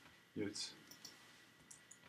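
Faint computer keyboard clicks while code is being edited, a couple of them near the end, with a short breathy vocal sound about half a second in.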